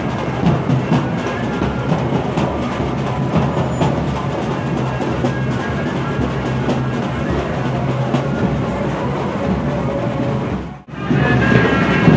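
Street procession drums played in a dense, rhythmic clatter of many strikes. The sound drops out suddenly for a moment about a second before the end, then returns.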